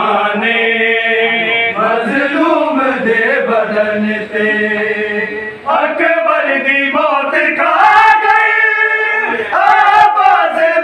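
A group of men chanting a noha, a Muharram mourning lament, together in a loud sung chant. The singing drops briefly about five and a half seconds in, then comes back louder and higher.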